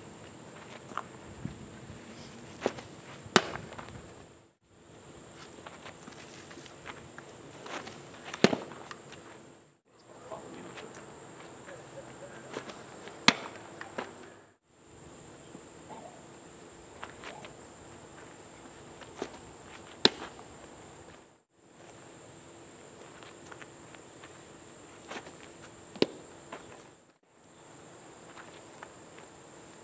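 Baseball pitches popping into a catcher's mitt: five sharp pops, one every five or six seconds, with the sound dropping out briefly between them. A steady high-pitched insect buzz runs behind.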